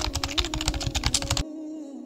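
Rapid computer-keyboard typing clicks, a sound effect for the letter-by-letter text animation, stopping about one and a half seconds in. A low steady hum runs underneath.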